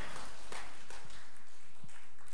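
A pause in speech: the steady background hiss of the hall picked up through the preacher's microphone, with a few faint soft knocks in the second half.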